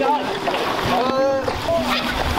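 Several people's voices talking over one another, with background music underneath.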